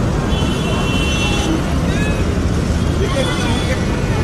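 Steady low rumble of a moving vehicle or road traffic, with faint voices mixed in and a brief high steady tone lasting about a second near the start.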